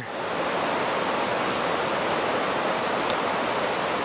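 Steady rushing of a rocky mountain stream, the Little River, running over boulders.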